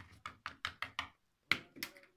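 Small plastic toy figure tapped against a wooden shelf: a quick run of light taps, about six a second, then two louder knocks near the end.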